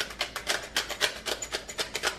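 Hand-twisted pepper mill grinding black peppercorns, a fast, uneven run of crunching clicks, several a second.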